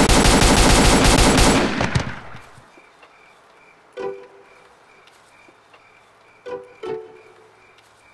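A rapid burst of handgun fire, many shots in quick succession, stopping about two seconds in. After it comes quiet, with a faint repeating chirp and a few brief short sounds.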